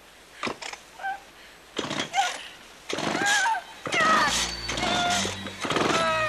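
A woman's high, panicked screams and cries, coming in loud, breaking bursts from about two seconds in, with a low steady hum joining underneath about four seconds in.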